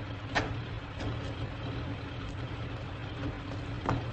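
A vehicle engine idling with a steady low rumble, with a few light knocks: one about half a second in, another about a second in, and one near the end.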